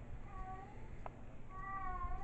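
Two faint animal calls, each rising then falling in pitch: a short one near the start and a longer one near the end, with a soft click between them about a second in.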